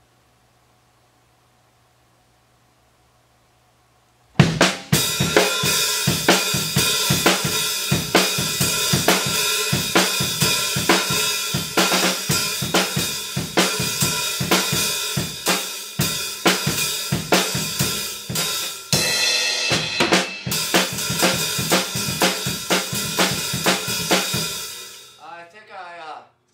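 Full acoustic drum kit played in a steady rhythm, with kick drum, snare, hi-hat and Zildjian cymbals. It comes in suddenly after about four seconds of quiet, runs for roughly twenty seconds, and stops shortly before the end.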